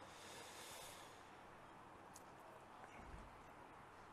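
Near silence: only faint background noise from a distant outdoor pitch.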